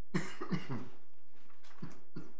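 A person coughing: a quick run of about three coughs in the first second, then a single cough near the end, over a faint steady hum.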